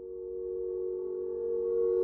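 Intro soundtrack: an electronic drone of a few steady held tones, swelling gradually louder.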